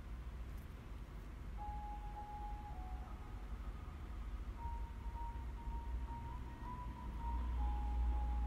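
A faint, simple melody of single clear notes, stepping up and down in pitch, starts about one and a half seconds in. Under it runs a low steady rumble that grows louder near the end.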